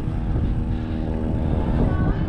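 Wind noise buffeting the camera's microphone while a bicycle is ridden along, with a steady hum of several even tones underneath.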